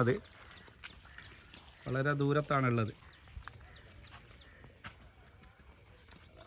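A man's loud, drawn-out call without words, about two seconds in: two held notes run together, the second falling away at the end.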